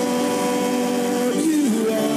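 Gospel worship music: a long held chord of sung and keyboard notes, with one note bending down in pitch about halfway through.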